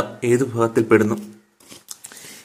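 Speech only: a voice lecturing in Malayalam, which stops about a second and a half in.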